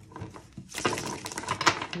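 A deck of tarot cards being shuffled by hand: a dense run of rapid flicking and rustling of cards starting a little under a second in.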